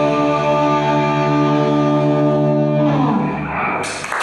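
The closing chord of a punk rock song, held on distorted electric guitars and bass and then fading out about three seconds in. Near the end the crowd starts cheering and clapping.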